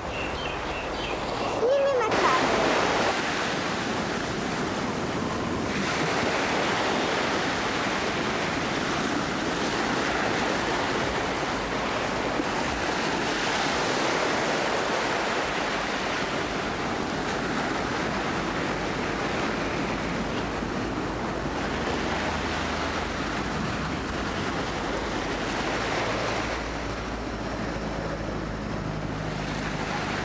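Small waves washing onto a sandy beach: a steady rush of surf that swells and eases every few seconds.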